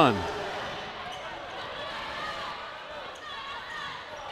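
A volleyball rally: a few sharp thumps of the ball being served and struck, over the steady murmur of an arena crowd.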